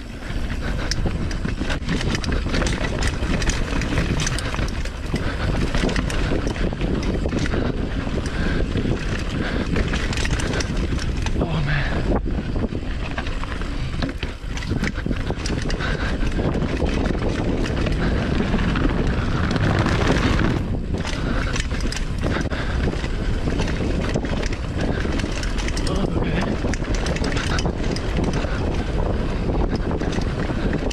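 Mountain bike riding fast down dirt singletrack: wind buffeting the camera microphone, tyres rolling on dirt, and the bike rattling and clattering over bumps. Near the middle it crosses a wooden slatted boardwalk.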